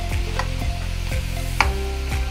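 Metal utensil stirring and scraping cook-up rice in a large aluminium pot, with a few sharp clicks of metal on the pot, the clearest about a second and a half in, over a steady low hum.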